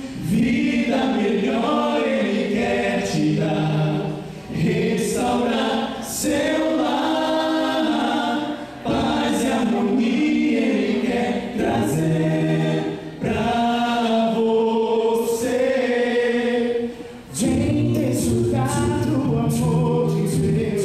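Male vocal quartet singing a cappella in close harmony into microphones, a Portuguese-language gospel song. The voices run in sung phrases with brief gaps about every four to five seconds.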